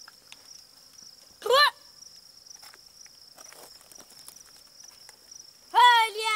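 Insects chirring steadily at a high pitch, broken by two short, loud calls: one about a second and a half in, and another starting near the end.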